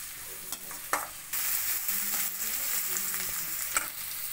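Chopped onions sizzling in hot oil in a stainless steel kadai as they fry toward golden brown, stirred with a perforated metal ladle that clicks and scrapes against the pan a few times. The sizzle grows louder a little over a second in.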